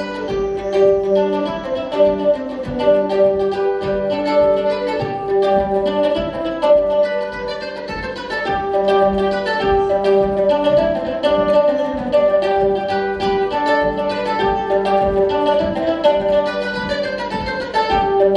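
Plucked acoustic string instrument playing an instrumental passage of a folk song: a run of picked notes over a sustained low note, with no singing.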